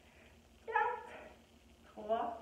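A single short, high-pitched vocal call about two-thirds of a second in, lasting under half a second, over quiet room tone.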